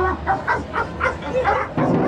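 A dog barking in a quick run of short, high yaps.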